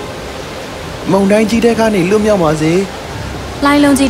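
Steady hiss of rain and storm noise, with a voice speaking over it from about a second in and again near the end.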